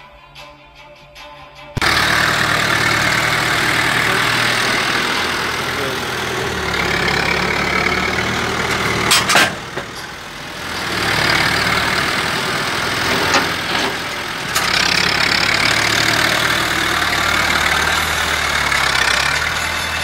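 Farm tractor engine running loudly, cutting in abruptly about two seconds in after a quieter stretch. There is a sharp clank about nine seconds in.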